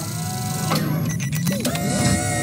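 Film-trailer soundtrack: music mixed with electronic sound effects. A burst comes about two-thirds of a second in, then steady beeping tones and a short gliding whir in the second half.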